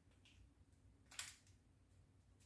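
Near silence, with one brief, faint rustle about a second in as a small plastic-wrapped pack of pads is handled.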